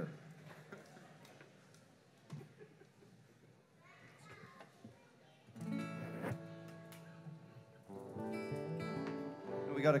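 A quiet pause, then a guitar strums a chord that rings out and fades, and about two seconds later a second chord is strummed and held.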